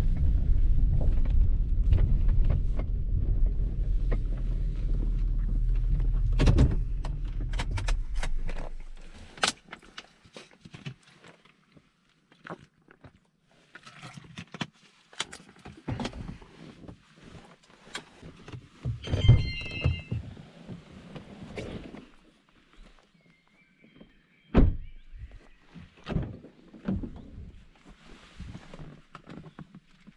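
Honda truck driving on a gravel road, heard from inside the cab as a steady low rumble that dies away about eight seconds in as the truck stops. After that come scattered knocks, clicks and thunks of gear being handled inside the cab.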